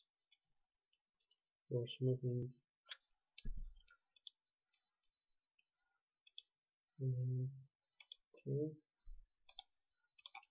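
Computer mouse clicking: about a dozen short single clicks at irregular intervals, some in quick pairs, as edges and dialog fields are selected in the CAD program.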